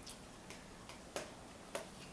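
A handful of faint, short clicks at uneven intervals, about five in two seconds, against quiet room tone.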